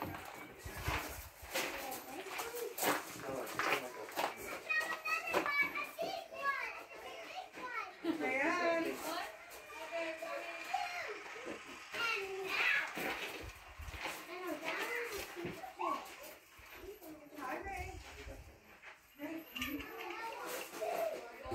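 Children's voices talking and calling out, the words indistinct, with a few light knocks in the first seconds.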